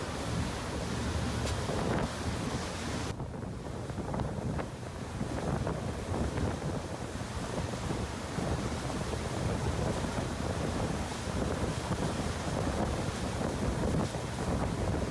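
Wind buffeting the microphone over the churning, rushing wake water behind a fast-moving boat, with a steady low rumble. The higher hiss drops away suddenly about three seconds in and gradually returns.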